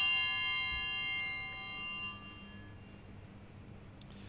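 A small altar bell's ring dying away, rung at the elevation of the bread and wine at the close of the eucharistic prayer; it fades out about two seconds in, with a few light clicks as it fades.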